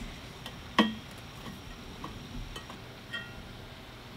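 A few faint clicks and light clinks from a homemade bottle-rocket launcher being handled. One short ringing clink comes about a second in, followed by scattered small ticks.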